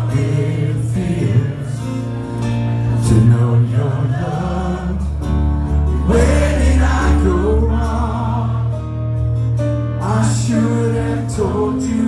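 Live acoustic punk ballad: a male voice sings with a strummed acoustic guitar and keyboard, with many voices from the audience singing along.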